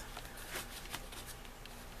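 Faint rustle of paper album pages being handled and turned.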